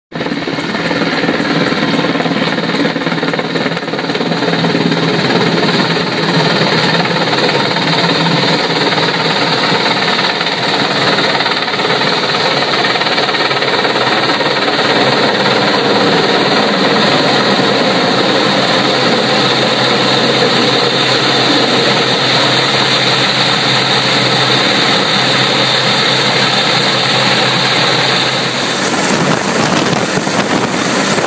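Large military helicopter flying low and hovering close overhead: loud, steady rotor beat with engine noise, and a high whine that stops near the end.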